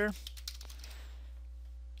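Computer keyboard keys clicking faintly as a search phrase is typed, mostly in the first half, over a steady low hum.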